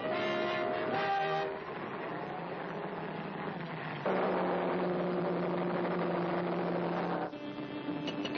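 Cartoon sound effect of a rocket car's engine: a steady, noisy roar with a low hum, coming in as brass music stops about a second and a half in. It grows louder about four seconds in and falls back about seven seconds in.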